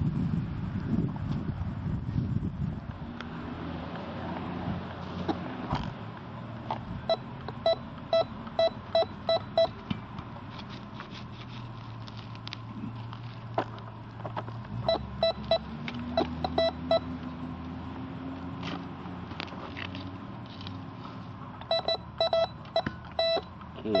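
Radio Shack metal detector giving three runs of short, evenly spaced beeps, about three a second, as its coil sweeps over a buried metal target.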